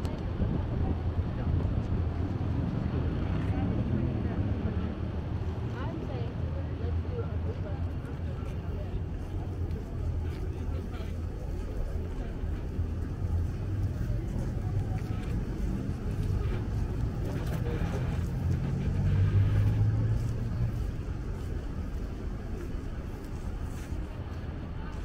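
City street ambience: a steady low traffic rumble with scattered murmured voices of passersby. About three-quarters of the way through, an engine swells louder and fades as a vehicle passes.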